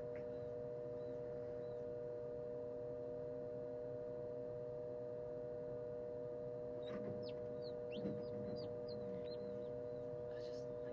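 A newly hatched Lavender Ameraucana chick peeping: a quick run of about eight short, high chirps starting about seven seconds in, with a soft knock or two among them. Under it runs the incubator's steady hum.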